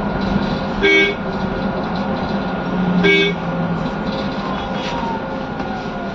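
Steady running noise inside a city bus, broken twice by a short vehicle-horn toot, about a second in and again about two seconds later.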